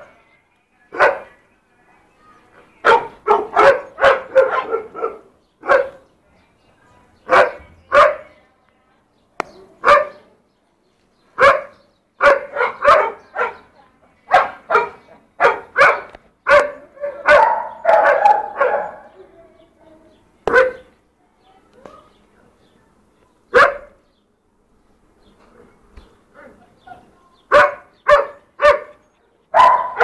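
Pugs barking: short, sharp barks in quick runs of several with pauses between, thinning out for a few seconds about two thirds of the way through, then a fast run near the end.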